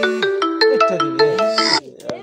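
A mobile phone ringtone playing a quick marimba-like melody of short struck notes, about five a second, that cuts off abruptly near the end.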